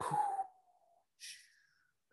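A man's voice closing a beatboxed 'boots and cats' pattern: a hissy 'ts' sound trailing off into a faint falling tone in the first second, then a soft breathy hiss a little after a second in, and quiet.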